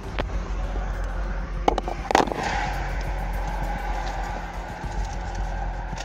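Steady roadside highway noise, traffic and wind with a deep rumble, picked up by a police car's camera microphone. A few sharp knocks or clicks come about two seconds in.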